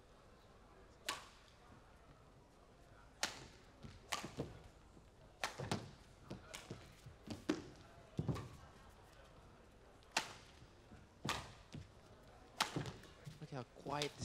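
A badminton rally: sharp cracks of rackets striking a shuttlecock, about a dozen of them, usually a second or two apart and sometimes in quick pairs, mixed with players' footfalls on the court, all fairly faint against the quiet hall.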